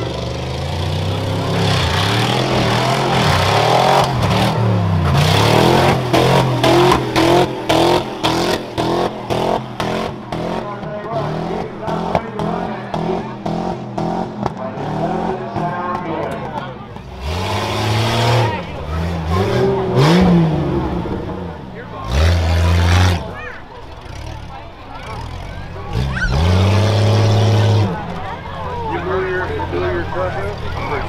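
A rough truck's engine revving hard and backing off again and again, its pitch rising and falling as it runs a dirt course. A rapid run of knocks and rattles comes in the middle, from about six to sixteen seconds in.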